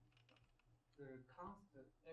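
Very quiet room with faint, off-microphone speech from an audience member asking a question about a second in. A short run of soft clicks comes near the start, over a steady low hum.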